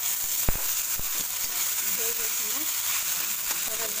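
Upma frying with a steady sizzle in a hot kadai as it is stirred with a steel spatula, with two sharp clinks of the spatula on the pan about half a second and a second in.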